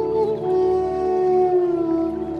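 Bansuri bamboo flute playing slow meditative music over a steady low drone. A few quick ornamented notes give way, about half a second in, to one long held note that dips slightly near the end.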